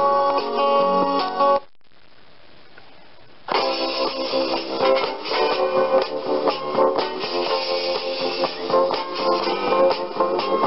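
Recorded songs playing from a small MP3 sound-player board through a small loudspeaker. One song cuts off about a second and a half in, leaving about two seconds of faint hiss. Then the next track starts, with strummed guitar.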